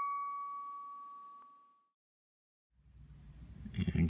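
The last struck note of a chime-like intro jingle rings on as one clear tone and fades away over about two seconds. A moment of silence follows, then faint room noise comes in near the end.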